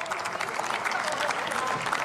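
Applause: many members of parliament clapping at once, a dense, steady patter of hands with some voices underneath.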